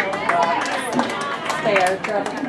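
People talking close by in casual conversation, with a few short sharp clicks behind the voices.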